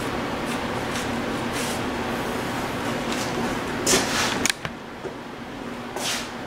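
Microfiber towel wiping over a truck's painted body panel: a steady rubbing hiss with a louder swipe about four seconds in, after which the sound drops away.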